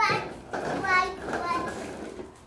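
A young child's high-pitched wordless vocal sounds: a short squeal at the start, then a couple of drawn-out calls about a second in.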